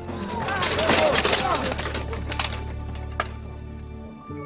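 Animated film soundtrack: a short voice-like sound in the first second or so, then quiet music over a low steady hum, with two sharp clicks in the second half.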